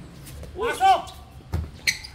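Basketball players during a game: a short shout about half a second in, then a low thump about one and a half seconds in and a sharp click just before the end.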